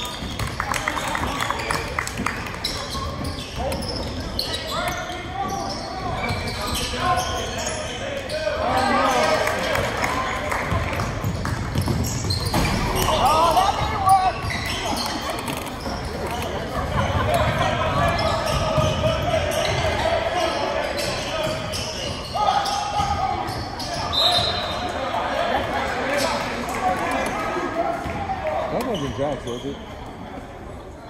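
Basketball game sound in an echoing gym: a crowd of voices calling out continuously, with a basketball bouncing on the hardwood floor.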